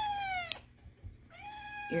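Domestic cat meowing twice. The first meow falls in pitch and ends about half a second in; the second, steadier meow starts a little after a second in.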